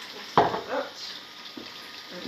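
Aloo gobi frying in a pot on a gas hob, a low steady sizzle, with one short loud sound about a third of a second in.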